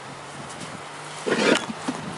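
A heavy four-cylinder engine block being turned over on a plywood board, giving one loud, rough scraping burst about a second and a half in and a lighter knock just after.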